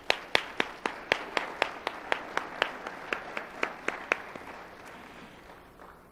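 Audience applause, with one pair of hands standing out, clapping loudly and evenly about four times a second. The clapping stops about four seconds in, and the rest of the applause dies away soon after.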